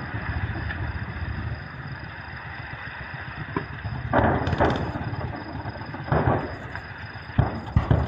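Live-fire weapons heard from a distance: a steady low rumble punctuated by about five sharp bangs. Two come close together a little past four seconds in, one just past six seconds, and the two loudest come near the end.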